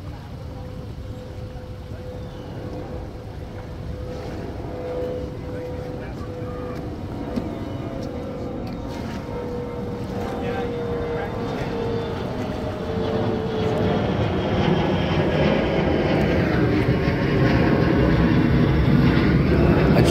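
An engine drone that grows steadily louder as it approaches, with a steady hum that slides slightly lower in pitch partway through.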